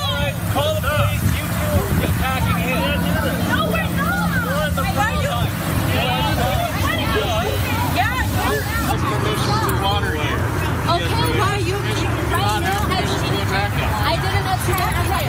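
Several people's voices talking over one another in a heated argument, over a steady low engine hum.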